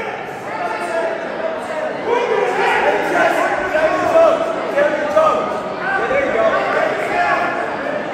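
Several spectators' voices calling out and talking over one another in a reverberant gym, shouting encouragement to a wrestler on the mat.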